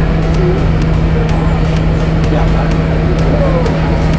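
Bus engine running with a loud, steady low drone, heard from inside the passenger cabin, with a crowd of boys' voices chattering over it.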